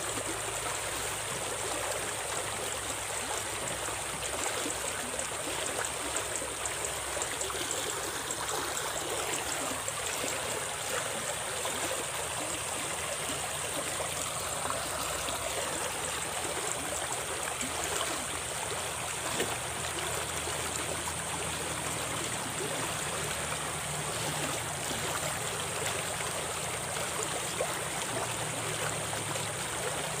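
Small, shallow stream running fast over riffles, a steady rushing of water.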